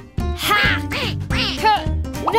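A few short, cartoonish duck quacks over upbeat children's background music.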